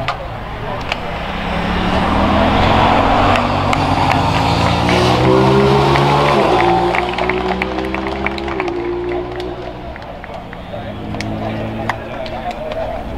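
A motor vehicle engine revving up, its pitch rising steadily for several seconds as it grows louder, then dropping in two steps and fading.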